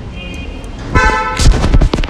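A car horn sounds once, short and loud, about a second in, after a faint short beep; several knocks follow.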